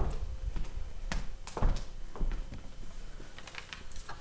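Handling noise on a laptop's own microphone as the laptop is moved and set down: several sharp knocks and bumps over a low rumble.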